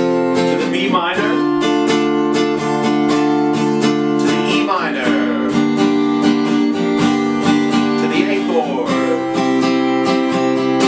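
Acoustic guitar, capoed at the third fret, strummed in a steady down, down, up, up, down, up pattern through the progression D, B minor, E minor, A. There is a short sliding squeak at each of the three chord changes, about a second in, near the middle and near the end.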